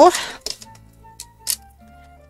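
Two or three short crisp clicks of a plastic Xyron sticker-maker strip being handled, over faint background music; a spoken word trails off at the very start.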